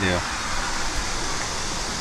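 Steady, even background hiss with no distinct events, after a man's voice finishes a word at the very start.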